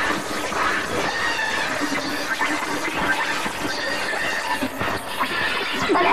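Dense, overlapping cartoon animal calls and sound effects from several soundtracks layered together.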